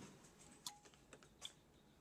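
Near silence: room tone with two faint ticks, one a little before halfway through and one about three quarters of the way through.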